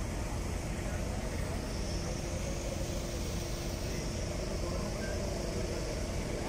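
Diesel engine of a JCB backhoe loader running steadily at a low, even rumble.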